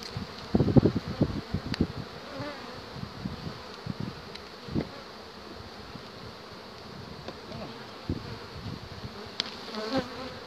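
Honeybees buzzing steadily around an opened hive while a frame is inspected. A cluster of low thumps about a second in, and a few fainter ones later.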